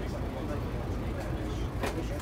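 Ikarus 435 bus's diesel engine idling, a steady low rumble heard from inside the passenger cabin, with one sharp click shortly before the end.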